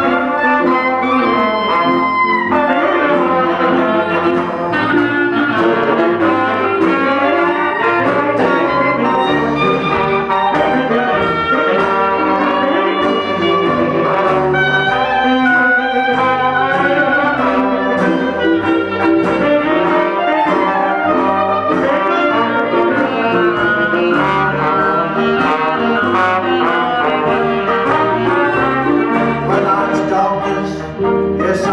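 A traditional New Orleans-style jazz band playing live: clarinet, trombone and tenor saxophone play over drums, double bass and keyboard, with regular cymbal and drum strokes keeping the beat.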